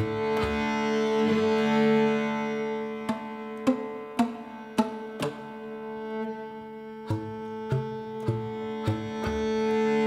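Cello and bass flute playing a slow contemporary chamber piece. A steady held drone runs under short, sharp percussive notes that come about every half second, pausing for a couple of seconds in the middle.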